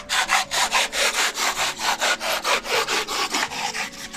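A bare hacksaw blade for metal, held in the hand, sawing back and forth through cured low-expansion polyurethane foam in quick, even strokes, about five a second. The foam is cutting away cleanly.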